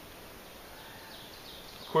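Quiet outdoor background with faint high chirps from about a second in. The bow draw makes no distinct sound, and the leather back quiver stays silent. A man's voice starts right at the end.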